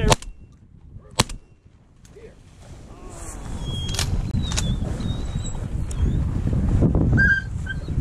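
Two shotgun shots at flying ducks, the first right at the start and the second about a second later. They are followed by rustling and handling noise as the gun swings down, with a few fainter clicks and thin high calls.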